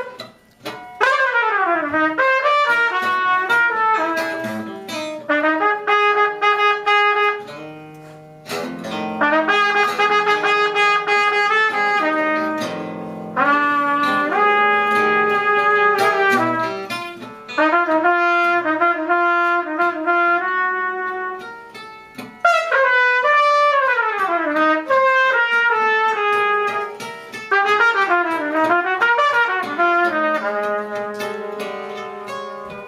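Trumpet and archtop guitar improvising together. The trumpet plays held notes and long falling glides in pitch, between short pauses. The guitar adds plucked notes and sharp struck attacks.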